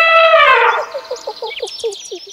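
Cartoon elephant trumpet sound effect, held and fading out within the first second. It is followed by a rapid run of short bird chirps and tweets.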